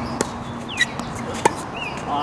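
Tennis ball being hit back and forth on a hard court: two sharp knocks of ball on racket strings or court surface about a second and a quarter apart. Birds chirp in the background.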